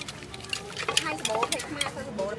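Sharp clicks and clinks, with a person talking from about a second in.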